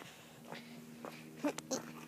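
A few light knocks and clicks of a plastic bucket being handled, over a faint steady hum.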